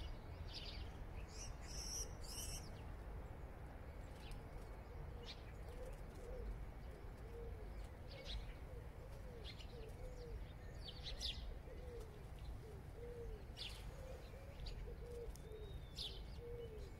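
A pigeon cooing: a long string of short, repeated coos beginning about five seconds in. Scattered brief high chirps from small birds and a steady low hum lie underneath.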